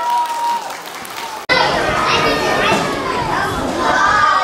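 Many children's voices talking over one another in a large hall, a crowd-like chatter. About a second and a half in, the sound cuts abruptly from quieter voices to this louder chatter.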